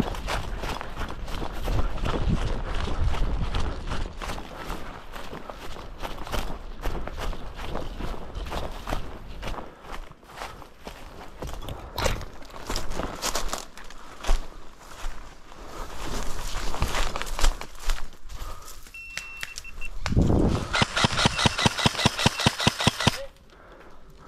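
Footsteps crunching through dry leaves and brush. Near the end comes a rapid, even burst of airsoft rifle fire lasting about three seconds.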